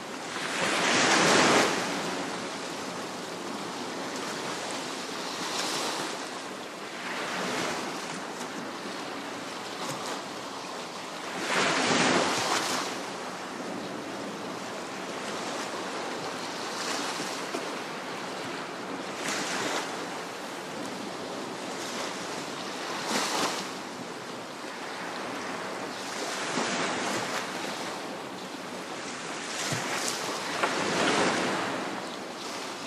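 Waves washing onto a beach, a steady hiss of surf broken by swells every few seconds. The two biggest break about a second in and near the middle.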